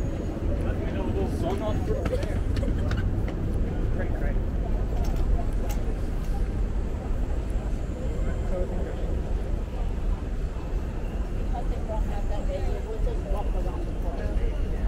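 Busy city street ambience: indistinct voices of people talking nearby over a steady low rumble of traffic, with a few sharp clicks in the first half.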